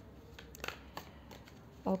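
A pause in speech: low room tone with a few faint, short clicks, then a voice says "okay" near the end.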